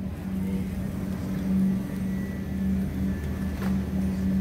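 Steady low hum of supermarket refrigerated display cases, wavering slightly in level, with a light click near the end.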